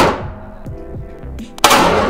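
Two shots from a 1911 pistol, about a second and a half apart, each ringing out in the reverberant indoor range. Background music plays underneath.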